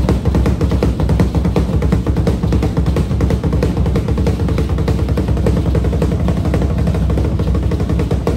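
Loud drum music with fast, dense beats running steadily, accompanying a Mayan ritual dance.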